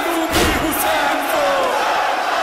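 A group of men chanting a noha refrain together in a long, wavering line, with one heavy thump about half a second in, on the beat of the recitation.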